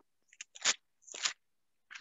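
A few faint clicks followed by two short crackling rustles close to the microphone, about half a second apart.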